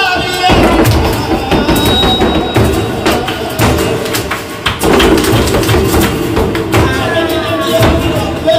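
Flamenco footwork (zapateado): a dancer's shoes striking the stage in rapid, irregular stamps and taps, over flamenco guitar. A sung line breaks off about half a second in and a voice comes back in near the end.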